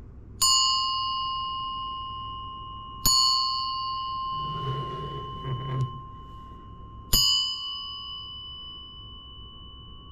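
Small brass Chinese bell hanging in a dragon frame, struck three times with a thin hand striker, the strikes about three and four seconds apart. Each strike gives a clear bell tone with bright high overtones that rings on and fades slowly, the ringing overlapping into the next strike.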